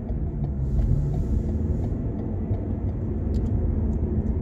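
Steady low rumble of a car driving along a street, heard from inside the cabin, with a few faint clicks about three seconds in.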